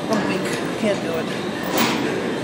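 Busy gym room noise: a steady background hum with faint, distant voices, and one brief sharp noise near the end.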